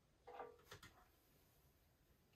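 Near silence: room tone, with a brief faint voice sound about a quarter second in and two soft clicks just after it.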